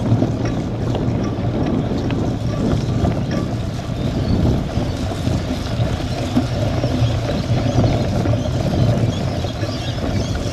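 Wind rushing over an action camera's microphone as a cyclocross bike rides over a wet, muddy dirt track, with tyre noise and light rattles from the bike.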